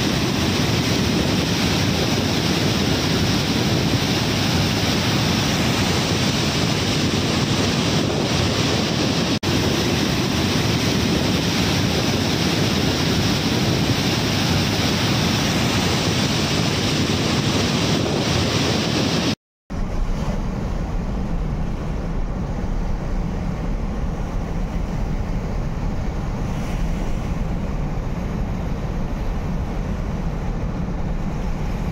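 Steady rush of floodwater pouring through a dam's open spillway gates and crashing into churning water below. About twenty seconds in, the sound breaks off for a moment and resumes as a duller, deeper rush.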